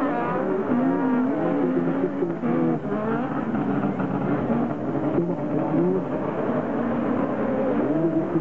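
Several 1600-class autocross buggy engines racing in a pack, their pitch climbing and dropping again and again as they rev up and back off through the corners.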